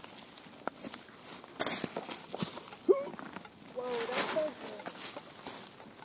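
Dry leaf litter rustling and crunching underfoot, with scattered clicks and scrapes as an arrow stuck in a small tree trunk is worked at by hand and with pliers. A few faint, brief vocal sounds.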